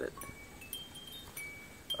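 Wind chime ringing faintly: several high, clear notes of different pitch sounding one after another, some overlapping, with a few light ticks.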